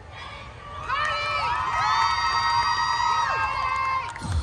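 Audience cheering and screaming, with several high-pitched voices holding long overlapping screams, getting louder about a second in.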